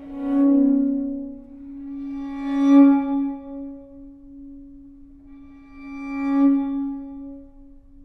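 Solo cello holding one bowed note, swelling in loudness three times with the long bow strokes and easing off between them.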